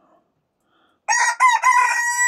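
Pekin bantam rooster crowing, starting about a second in: a few short broken notes, then one long held note.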